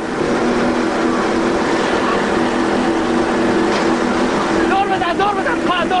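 A boat engine runs steadily under a constant rush of wind and water.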